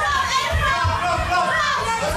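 Spectators shouting and cheering over one another, many of them children's high voices, with dull low thuds underneath.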